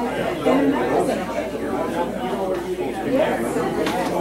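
Indistinct chatter of several people talking at once in a large hall, as groups hold separate conversations.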